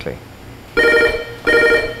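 Electronic chord tones sounding in two pulses of about half a second each, like a ringtone.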